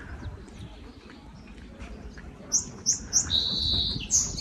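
A bird calling: three quick high chirps about two and a half seconds in, then one held high note near the end, over a low steady rumble.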